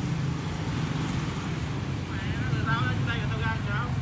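A motor scooter engine idling steadily, with faint voices in the background from about two seconds in.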